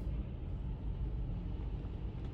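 Steady low background rumble and hum, with no distinct event.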